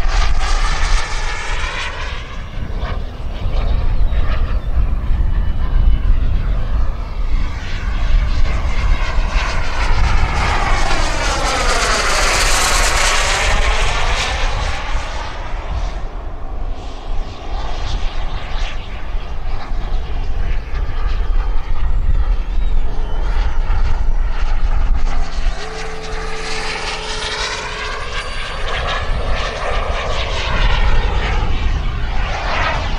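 Turbine engine of a radio-controlled Yak-130 model jet making passes overhead. It is a steady rushing whine that sweeps in pitch as the jet approaches and goes by, loudest in a pass about twelve seconds in and swelling again near the end. A low wind rumble on the microphone runs underneath.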